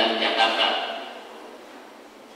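A man's voice over a microphone trails off about a second in, leaving a faint steady background.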